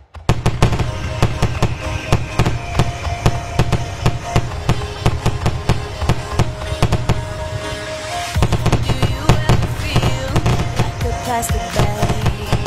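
Fireworks display: a dense barrage of shells bursting and crackling, many bangs a second over a low rumble, starting abruptly. Music with held notes plays underneath.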